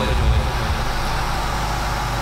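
Steady low background rumble with an even hiss, with no distinct events.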